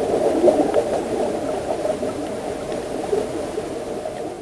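Steady underwater bubbling and gurgling.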